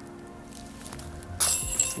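A putter disc hits the chains of a disc golf basket about one and a half seconds in, with a short metallic jingle of rattling chains, over steady background music.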